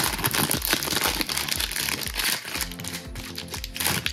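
A foil card-pack wrapper crinkling as it is pulled open, loudest in the first half and thinning out after about two and a half seconds. Background music with a steady beat runs underneath.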